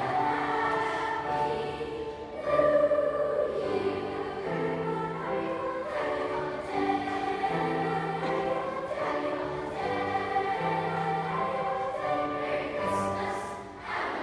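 Middle school choir singing together in held, sustained notes, swelling louder about two and a half seconds in.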